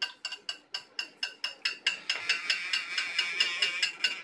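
Hand-held metal percussion struck in a steady rhythm, about four or five ringing metallic clinks a second, each at the same few pitches. About halfway through the strokes quicken into a dense, shimmering jingle.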